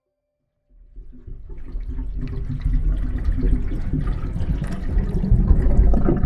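Rushing water, starting just under a second in and building up to a loud, steady gush with a deep rumble.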